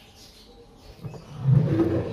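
GMC 897W 10-inch portable speaker giving out a short, loud, bass-heavy sound starting about a second in, with its bass turned up to full.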